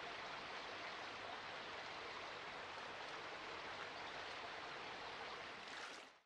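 A shallow stream running over rocks: a soft, steady rush of water.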